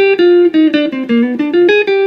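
Gibson Flying V electric guitar through a Fender Pro Reverb amp with reverb, playing a single-note jazz lick. The run steps down through about ten notes and climbs back up near the end.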